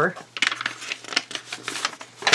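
Paper being handled: two short bursts of light rustling and clicking, about half a second in and again near the end, over a faint steady low hum.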